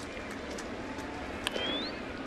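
Steady ballpark crowd murmur, with one sharp crack of the bat meeting the ball on a ground ball about one and a half seconds in, followed at once by a short whistle rising in pitch.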